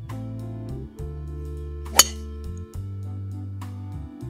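Background guitar music with a steady bass line, with a single sharp crack of a driver striking a teed golf ball about two seconds in.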